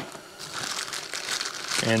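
Thin clear plastic parts bag crinkling as it is handled and a bushing is pulled out of it.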